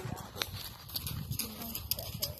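A pony's hoofbeats on a gravel surface as it passes by, an uneven series of short strikes and crunches.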